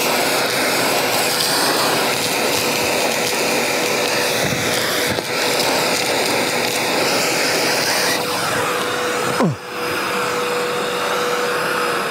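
Milwaukee M18 FUEL 0885-20 cordless backpack vacuum running at full suction while its nozzle picks up loose steel screws, a steady airflow rush with a constant whine. The sound dips briefly about nine and a half seconds in. Its suction is very strong.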